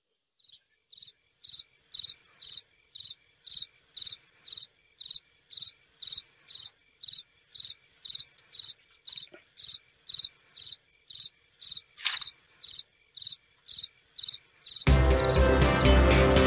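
Cricket soundtrack: short, high chirps repeating steadily about twice a second, with a brief falling tone about twelve seconds in. Near the end, music starts suddenly and is much louder than the crickets.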